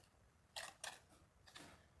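Trowel scraping mortar into the joints of a stone wall during pointing: three short, faint scrapes.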